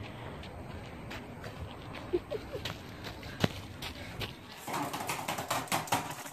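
Wind rumbling on the microphone with scattered light knocks, then, for the last second or so, a dense run of quick clicks from typing on a tablet keyboard and a laptop.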